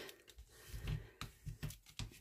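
Bone folder rubbing and pressing along the folds of patterned paper, burnishing the creases: a few faint, irregular scrapes and taps against the cutting mat.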